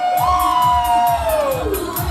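Dance music with a steady beat playing through a hall's sound system, with a long drawn-out 'woooo' cheer from the crowd that tails off near the end.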